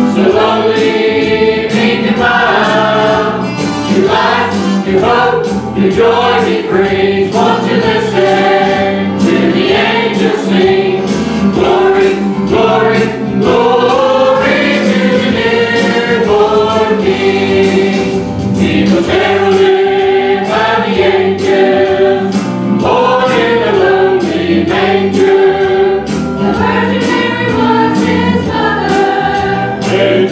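Mixed church choir of men and women singing a hymn together over an accompaniment that keeps a steady beat.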